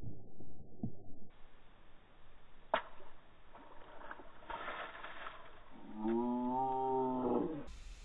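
Slowed-down sound from slow-motion water-balloon bursts: muffled, low splashing and a single sharp pop a little under three seconds in. Near the end comes a long, deep, drawn-out voice that dips and then rises in pitch, a child's cry stretched out by the slow motion.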